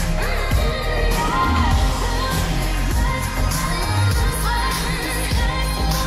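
Pop song playing: a sung vocal line over bass notes and a steady beat.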